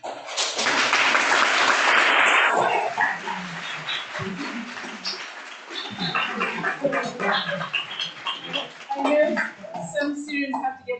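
Audience applauding. The clapping is loudest for the first three seconds, then thins out among voices and murmur.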